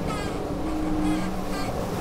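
Steady rush of water on the hull of an IMOCA 60 racing yacht under sail, with a low, steady hum of onboard equipment, heard from inside the cabin.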